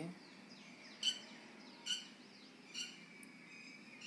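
A bird chirping three times, short pitched calls a little under a second apart, over faint background hiss.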